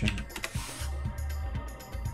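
Background music with a steady, pulsing bass beat, with a few computer keyboard key clicks in the first second.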